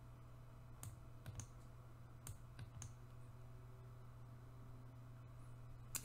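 Near silence: a steady low hum with about six faint, short clicks in the first three seconds, from a computer mouse.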